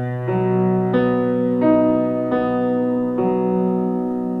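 Piano, left hand alone, playing a B major chord broken into single notes (root, fifth, octave, third and back down), a new note about every two-thirds of a second with the earlier notes left ringing.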